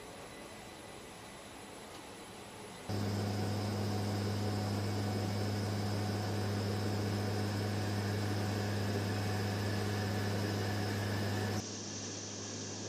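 Steady noise, then about three seconds in the loud, steady cabin drone of an MC-130J Commando II in flight, heard inside the cargo hold: its turboprop engines and six-blade propellers give a deep unchanging hum with a high whine above it. Near the end the drone drops suddenly to a lower level.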